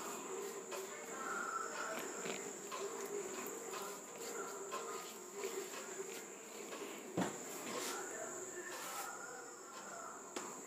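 A steady high-pitched tone runs throughout under faint background sounds, with one short knock about seven seconds in.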